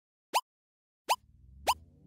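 Short cartoon-style pop sound effects, three quick upward-flicking blips about 0.6 s apart. A rising synth music swell fades in about a second in.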